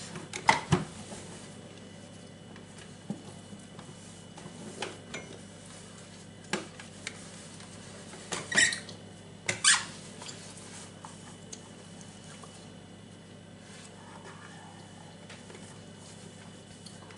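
A cloth being rubbed over the plastic body of a capsule coffee machine while it is wiped clean, giving scattered short squeaks and light knocks. The sharpest come in the first second and twice between about eight and a half and ten seconds in.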